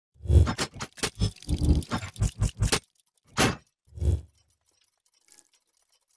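Logo-intro sound effects: a fast run of about a dozen sharp clicks and hits in under three seconds, then two more single hits about two thirds of a second apart, and a faint one near the end.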